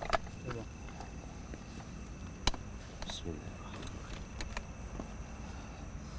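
A couple of brief, low vocal sounds from a person, with a few sharp clicks and handling knocks, over a steady high-pitched background tone.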